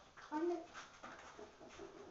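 Faint sounds of a dog searching scent-work containers, with its nose to a container near the end. A brief spoken word comes about half a second in.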